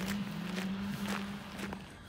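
Footsteps of people walking along a paved park path, about two steps a second, over a steady low hum that fades out near the end.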